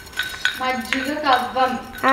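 A few light clicks and clinks of miniature toy kitchenware being handled, as a tiny wooden buttermilk churning stick is twirled in a small clay pot. From about halfway a girl's voice is heard, louder than the clinks.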